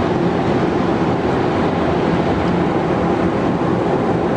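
Ferrari FF's V12 engine running steadily under a low, even hum, mixed with tyre and wind noise, heard inside the cabin while cruising at a steady high speed.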